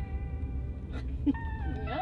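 Steady low rumble of a car driving, heard inside the cabin, under held tones of background music. A short pitched, whiny voice sound comes in during the last half second.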